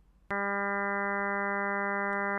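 A computer-synthesised tone from SuperCollider: ten sine-wave oscillators at 200 Hz and its whole-number multiples up to 2000 Hz, summed into one steady, unchanging tone that starts abruptly about a third of a second in.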